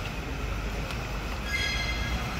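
Steady low rumble and hiss of background noise, with a brief high-pitched tone with several overtones about one and a half seconds in.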